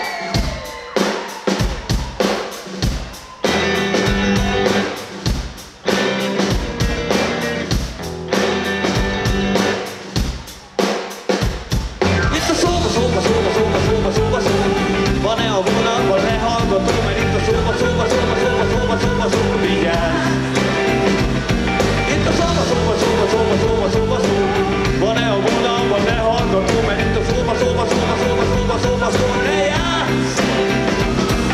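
Live rock band playing an instrumental song intro: drum kit alone with kick and snare hits for about the first twelve seconds, then electric guitars and bass come in and the full band plays on steadily.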